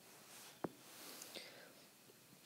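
Near silence: faint room hiss with a single short click about two-thirds of a second in and a faint breathy sound.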